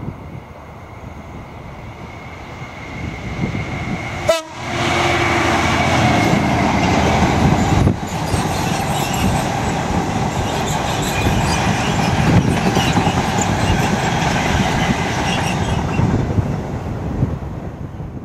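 Class 66 diesel freight locomotive approaching with its engine running, then a long rake of empty wagons rumbling and clattering past close by. The sound turns loud about four seconds in, stays loud and dense, and starts to fade near the end.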